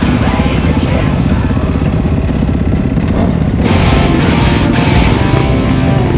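Several dirt-bike engines running as the riders pull away onto the road, under loud rock music.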